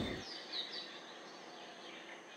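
Faint bird chirps, a few short high calls about half a second in, over quiet outdoor background noise. Guitar background music fades out in the first moment.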